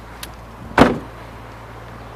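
A Volkswagen New Beetle convertible's car door shut once, just under a second in, with a faint click shortly before.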